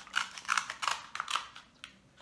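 Scissors snipping through a cooked king crab leg's shell: about five short, crisp crunches of the shell cracking under the blades.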